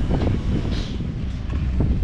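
Wind buffeting the camera microphone: a low, uneven rumble.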